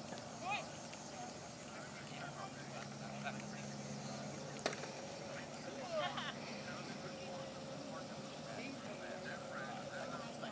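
Faint, indistinct voices of people on the field, with a brief call or two, over open-air background noise. One sharp click comes about halfway through, and a low hum is heard for a few seconds in the first half.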